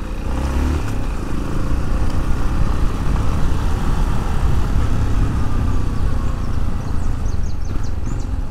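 Yamaha motorcycle running at low speed through town, a steady low engine and road rumble with no gear changes or revs standing out.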